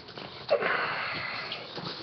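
A man breathing in hard through his nose close to the microphone: one sniff lasting about a second, starting about half a second in.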